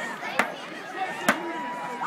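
Crowd chatter from many voices, with a sharp hit about once a second, three in all.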